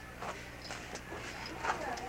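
Faint voices talking, with a few sharp clicks over a steady low hum.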